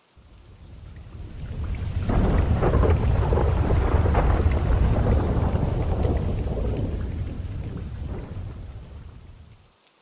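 Thunder rumbling over steady rain, swelling up over about two seconds, holding, then slowly dying away near the end.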